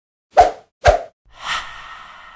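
Logo-intro sound effects: two short plops about half a second apart, then a swelling whoosh that leaves a ringing tone fading away.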